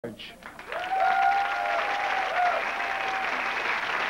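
Audience applauding and cheering, the clapping swelling in about three-quarters of a second in and carrying on steadily, with a held whoop over it for the first couple of seconds.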